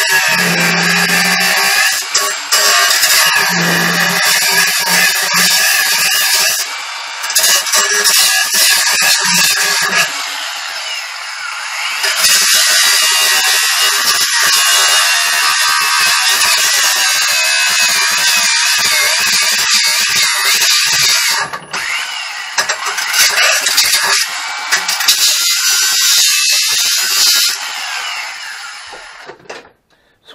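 Cordless 20-volt angle grinder with a cut-off disc cutting into steel tubing: a loud, screeching cut whose pitch wavers with the load and that eases off briefly a few times. It is widening the relief cuts so the tube can be bent further.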